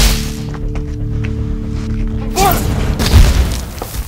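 Film score on sustained tones with spell-duel sound effects: a heavy hit right at the start, a swooping effect about two and a half seconds in, then a deep explosion boom about three seconds in as a brick wall is blasted apart.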